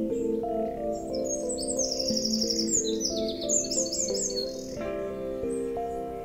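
Background music of soft, held notes, with a small songbird singing rapid, repeated high chirping phrases over it from about a second in until about four seconds in.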